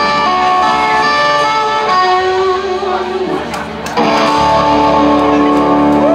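Live rock band with electric guitars playing long ringing notes; the sound dips briefly about three seconds in, then a loud chord is struck and held from about four seconds in.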